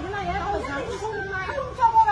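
Only speech: people talking over each other in an argument.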